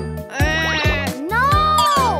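Cartoon character's wordless wailing cry, two drawn-out calls that waver and slide in pitch, the second rising, holding high and falling away. Under it runs a children's music track with a steady drum beat.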